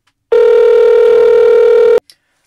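A loud, steady telephone-line tone that starts about a third of a second in and cuts off suddenly near the end: the sign that the call has ended and the line has gone dead.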